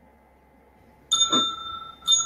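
Electronic bell-like chime from video-call software, a single ding about halfway through that rings out, with a second one starting right at the end. It sounds as a new participant is connected to the call.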